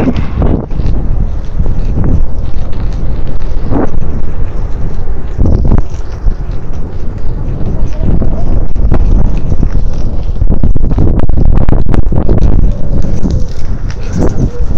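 Wind buffeting the phone's microphone while riding a bicycle, a loud, unsteady rumble with scattered small rattles and clicks.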